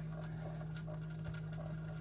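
A steady low hum with a faint even hiss behind it.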